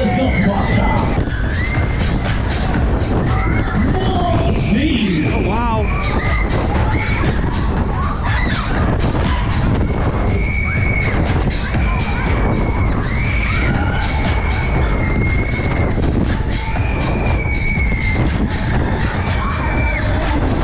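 Wind buffeting the microphone on a swinging, inverting fairground thrill ride, a steady heavy rumble with frequent knocks. Loud fairground music plays through it, with riders' drawn-out yells and whoops.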